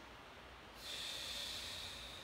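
A person breathing out audibly, an airy breath that starts just under a second in and lasts about a second.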